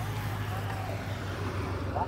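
Steady roadside traffic noise with a motorcycle engine running as the escort motorbike follows the racing cyclists past, and faint distant voices.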